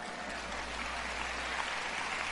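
Audience applauding, an even patter at moderate level.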